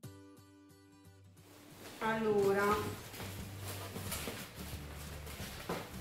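Faint music dying away in the first second, then a brief woman's voice about two seconds in, followed by quiet rustling and handling as a cardboard box is unpacked.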